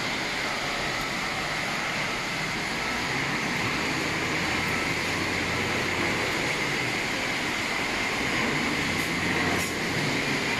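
Conveyor belts carrying shredded aluminium scrap running steadily, a continuous mechanical rumble and rattle with a steady high whine over it.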